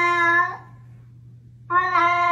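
A domestic cat giving long, drawn-out meows, each held at a steady pitch. One call ends about half a second in, and another starts near the end.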